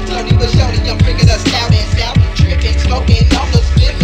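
Slowed-down hip hop track: rapping over deep bass drum hits that drop in pitch, about two or three a second.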